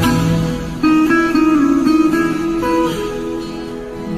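Acoustic guitar playing an instrumental passage of the song, with a fresh attack of notes about a second in and the sound fading away toward the end.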